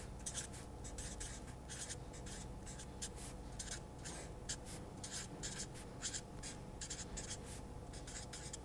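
Felt-tip marker writing on paper: a steady run of short, faint strokes, several a second, as letters are written out.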